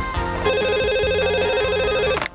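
Electronic telephone ringer sounding a fast warbling two-tone trill, starting about half a second in and cut off abruptly just after the end, over background music.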